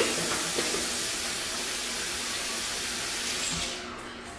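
Kitchen tap running into a stainless steel sink while hands are washed: a steady hiss of water that is shut off just before the end.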